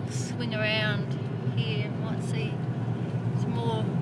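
Steady low rumble of a car driving, its engine and tyres heard from inside the cabin, with short bits of a voice about half a second in, around two seconds in and near the end.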